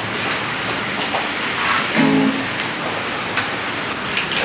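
Acoustic guitar being strummed, a steady wash of chords with one clearer sustained chord about two seconds in.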